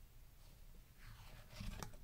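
Mostly near silence, then faint sliding and a few soft ticks from about a second in as paper trading cards are slid off a hand-held stack.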